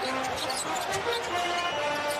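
A basketball being dribbled on a hardwood court, with music playing underneath.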